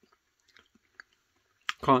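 A quiet stretch with a few faint mouth clicks from chewing a soft fruit jelly, then a sharp lip click just before speech resumes near the end.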